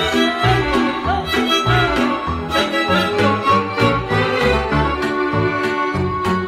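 Instrumental passage of Romanian folk dance music, an accordion carrying the melody over a steady bass beat.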